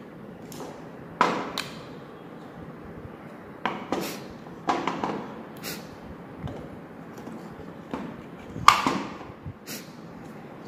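Scattered sharp clicks and knocks of motor parts being handled and fitted together: a plastic end cap with a ball bearing and a magnet rotor's steel shaft. About eight of them, the loudest near the end.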